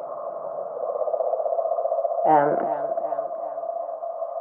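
A steady electronic drone held in a narrow middle pitch band, with a fast fluttering texture. A short snatch of voice comes in about two seconds in.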